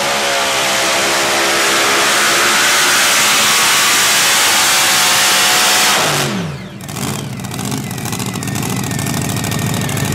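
Mini rod pulling tractor's engine at full throttle under the load of the sled, its pitch climbing steadily. About six seconds in the throttle is released at the end of the pull: the revs fall away quickly and the engine settles to a lumpy idle.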